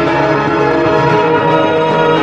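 Background music of continuous bell-like chiming, many ringing tones sounding together at a steady level.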